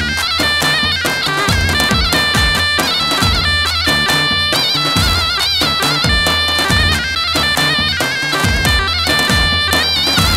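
Live Kurdish line-dance music: a reedy, bagpipe-like lead melody on the band's keyboard, with wavering held notes, over a steady drum beat.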